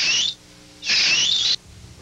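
A sound effect played back from a Synclavier sampler during editing: two short bursts of high hiss, each under a second, with a wavering whistle-like tone inside, and a faint low hum between them.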